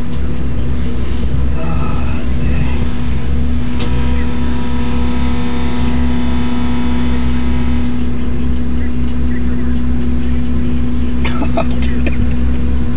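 John Deere 410G backhoe loader's diesel engine running steadily, a constant low drone with a steady hum.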